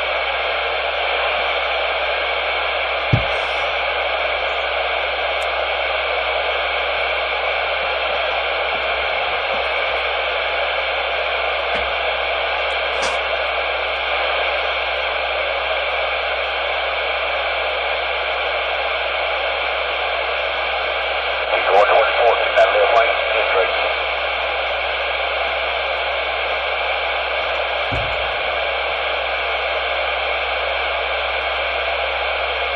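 Ranger 2950 base radio's speaker hissing steady receiver static while tuned to 27.185 MHz. About 22 seconds in, a brief garbled burst of signal breaks through the static for a couple of seconds, and there is a sharp click about three seconds in.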